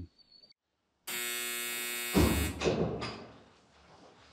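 Sound effects opening a documentary trailer: a steady electric buzz for about a second, cut off by a deep boom that rings out and fades.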